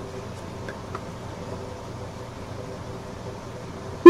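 Steady room-tone hum and hiss, with a couple of faint ticks about a second in.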